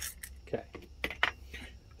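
A few small, sharp metal clicks and taps as the last screw is backed out of a small motorcycle carburetor's float bowl and the bowl is lifted off and set down.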